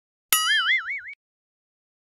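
Cartoon "boing" sound effect: a single springy tone that starts with a sharp click and wobbles quickly up and down in pitch, cut off after under a second.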